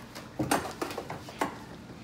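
A few light clicks and knocks of kitchen items being handled on a counter, around a frying pan, spaced out over the two seconds.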